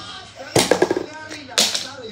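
A hand smacks down on the lever of a homemade catapult, a wooden stick seesawed over a plastic pencil box, with a sharp crack about half a second in as it flings a keychain. A quick run of clicks and clatter follows, with another short noisy burst near the end.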